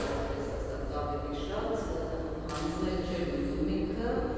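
Speech: a person talking, over a steady low hum.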